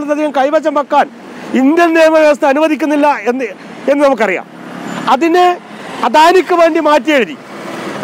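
A man speaking in Malayalam in short phrases, with road traffic passing in the background between his words.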